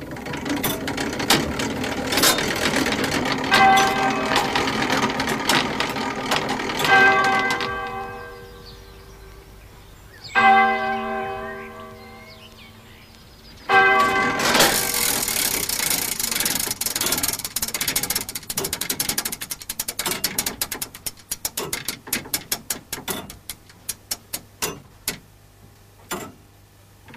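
A roughly 400-year-old church turret clock striking its bell four times, about three and a half seconds apart, each stroke ringing over the clatter of the clock's mechanism. After the last stroke the mechanism keeps clicking, the clicks slowing and fading toward the end.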